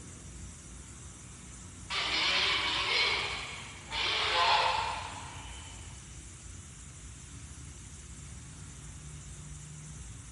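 Two short breathy hissing sounds, each a second or so long and starting abruptly, about two seconds apart, over a faint steady background hiss.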